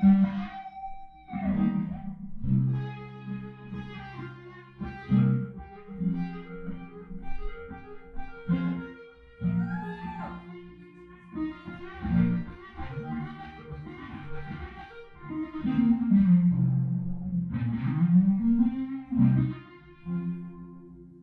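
Electric guitar played solo through an amplifier and effects in an instrumental passage, mixing strummed chords with single notes. Near the end, a couple of notes slide down and back up in pitch.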